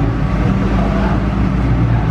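A steady low hum of a car engine running, with faint voices in the background.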